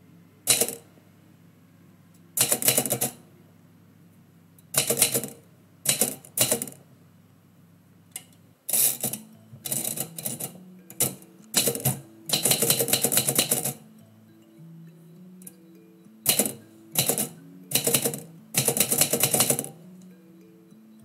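Typewriter keys striking in short bursts of rapid keystrokes, about a dozen bursts separated by pauses, as a line of text is typed out.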